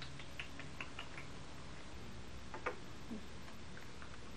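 A small child's short, faint, high-pitched vocal sounds, a few in the first second and one louder falling one near the end, over the steady hum and hiss of an old VHS-C tape recording.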